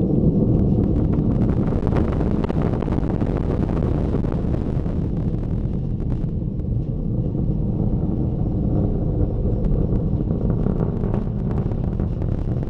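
Proton rocket launch heard from afar as a steady low rumble, dipping slightly about halfway through.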